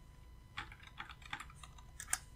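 Faint typing on a computer keyboard: a string of separate, irregular keystrokes.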